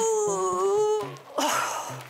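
A woman's long, drawn-out groan as she stretches a stiff, achy body, followed near the end by a shorter, breathy groan.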